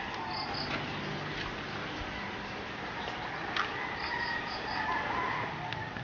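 Outdoor yard ambience: a steady low background hiss with short, high-pitched chirps in quick runs, two near the start and four about two-thirds of the way through, a faint drawn-out wavering call near the end, and one brief click in the middle.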